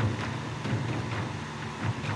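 Steady low mechanical hum, with a faint click at the start.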